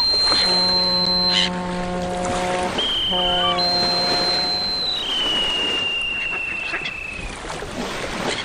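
A ship's horn gives two long blasts, the first about two seconds long and the second shorter. Above them a high, shrill whistle steps between two pitches and then holds a long, slowly falling note that stops a little past seven seconds in. A steady rushing noise like surf runs underneath.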